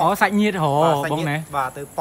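A man talking loudly and quickly, over a steady high-pitched chirring of crickets.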